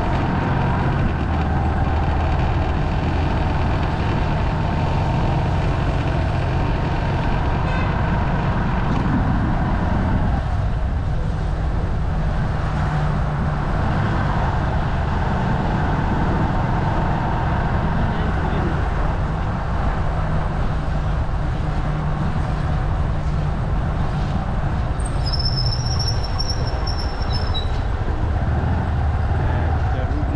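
Motorbike engine and road noise heard from a bike-mounted action camera while riding through city traffic, running steadily with small shifts in engine note. A thin high whistle-like tone sounds for about two seconds near the end.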